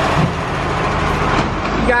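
Heavy truck engine running, a loud steady rumble with a hiss over it.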